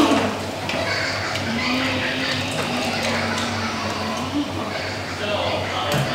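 A child's voice making a motorbike engine noise, one long held drone that rises briefly about four seconds in.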